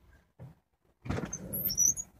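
After about a second of silence, rustling background noise starts, and a few short, high-pitched bird chirps come near the end.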